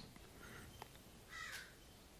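Near silence: room tone, with a faint bird call about one and a half seconds in.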